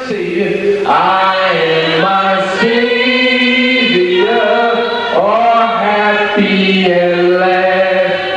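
Voices singing a slow hymn together in long held notes that step up and down in pitch every second or so.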